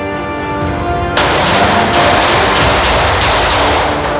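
Background music, and from about a second in a handgun firing a rapid string of shots, about three a second.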